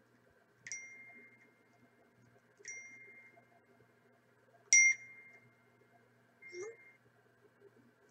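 Four electronic notification dings about two seconds apart, each a sharp ding with a ringing tone held for about half a second; the third is the loudest and the last is fainter.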